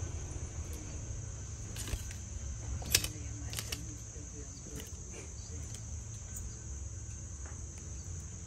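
Insects chirring steadily in one high, unbroken band, over a low rumble, with a few sharp clicks; the loudest click comes about three seconds in.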